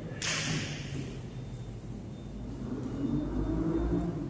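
Jiu-jitsu grappling on padded mats: a short, sharp swish about a quarter second in, then low thuds and a rumble of bodies shifting on the mat near the end.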